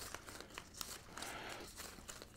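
Faint crinkling rustle with a few small ticks as decorative florist wire is twisted together around the leaf-wrapped stems of a bouquet handle.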